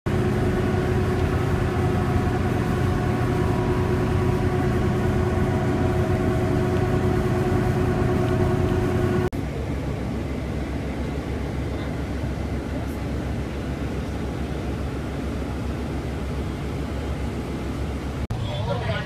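Steady running noise inside a city bus: a hum with several held tones, cut off abruptly about nine seconds in and replaced by a quieter, rumbling noise without tones.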